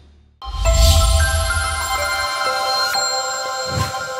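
Short electronic music sting for a news channel logo. After a brief pause it opens with a deep bass hit, followed by several bright, chime-like held tones, with a low swell near the end.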